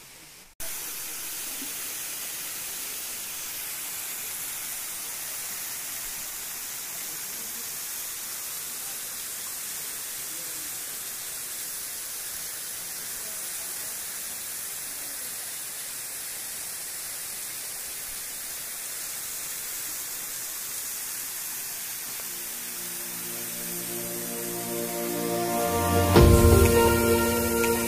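Steady rush of a waterfall's falling water, a hiss-like roar that holds even throughout. Music fades in over the last few seconds and grows loud.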